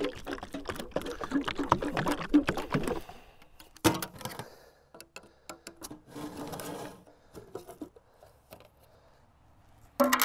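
A can of solid-colour stain shaken hard by hand, a rapid rhythmic rattle for about three seconds, then a sharp knock as it is set down, followed by scattered light clicks and taps of metal paint cans.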